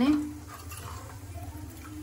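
Faint sound of a steel ladle moving in a pot of curry over a low, steady kitchen hum, after the end of a woman's spoken word at the start.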